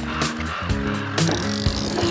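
Background music: an upbeat cue with a regular drum beat under held chords.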